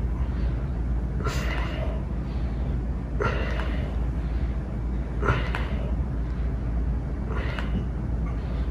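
A man breathing out hard, four forceful breaths about two seconds apart, one with each push-up as he strains toward the end of a set of 25. A steady low hum runs underneath.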